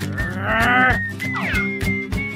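Cartoon background music with a character's drawn-out vocal cry that rises and then falls in pitch, followed by a quick falling glide.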